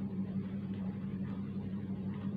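A steady low electrical or motor hum, with faint scratches of a marker tip drawing on paper.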